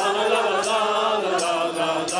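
A group of carol singers, men and women together, singing a carol in long held notes.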